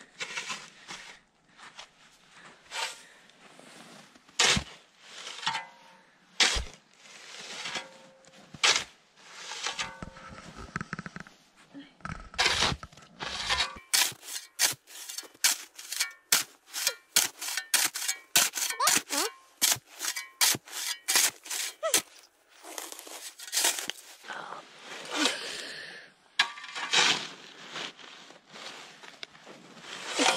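Metal snow shovel cutting into and scraping through packed snow while a path is dug, a run of short crunching scrapes. The strokes are irregular at first and come quickly, about two or three a second, through the middle stretch.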